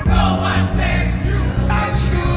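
Background music: a song with voices singing over a heavy bass line. A new passage starts abruptly at the very beginning.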